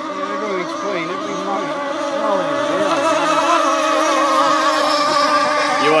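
Small engines of RC rigger model hydroplanes racing, a high buzz with the pitch of several engines wavering up and down as the boats run the course. It grows steadily louder as a boat comes nearer.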